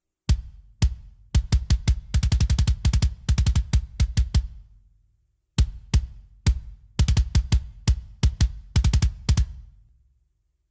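Soloed kick-drum bus of a deathcore mix playing back: separate sharp kick hits building into fast double-kick runs, a short break about five seconds in, then more hits and runs. It is being played as a comparison of a drum clipper bypassed and switched back on, which adds harmonics and saturation so the beater snap comes forward.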